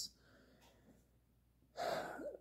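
Near silence, then near the end a man's short, sharp intake of breath through the mouth.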